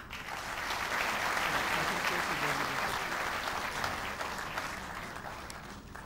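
Audience applauding, swelling within the first second and then slowly dying away toward the end.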